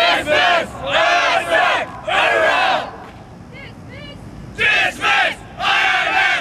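A group of cadets shouting in unison in loud, drawn-out yells: several in the first three seconds, a pause of about two seconds, then more near the end.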